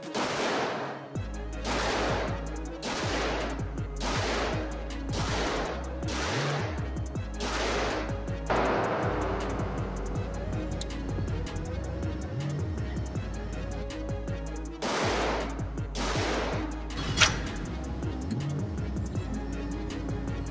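A string of pistol shots from a Springfield Armory Prodigy firing handloaded rounds, about one a second for the first nine seconds, then a pause and a few more shots, each echoing in an indoor range, under background music.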